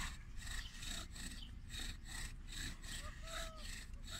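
Bow drill: a wooden spindle turning back and forth in a wooden hearth board as the bow is sawn, making a faint rhythmic friction rasp at about three to four strokes a second. This is friction heat building toward an ember, close to producing one.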